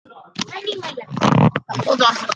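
A girl's voice making non-word vocal sounds, loudest in a rough, gravelly stretch just over a second in.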